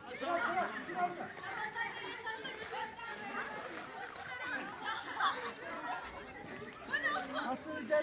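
Several people talking and calling out at once, overlapping indistinct voices.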